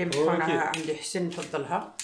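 Speech only: a person talking without a break, with no other sound standing out.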